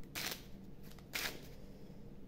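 Playing cards handled in the hands: two brief crisp rustles as decks are moved and squared, the first just after the start and the second a little over a second in.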